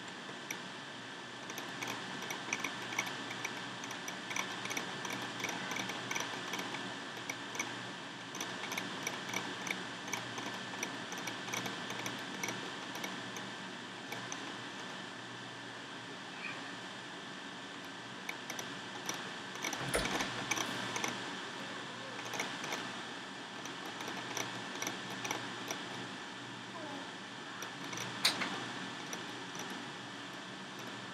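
Runs of small, rapid clicks from a computer mouse scroll wheel as a file list is scrolled, over a steady hiss and a thin high whine. A soft knock about twenty seconds in and a sharper click near the end.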